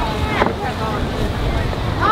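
Wind buffeting the microphone in a steady low rumble, with faint voices behind it and one brief sharp sound about half a second in.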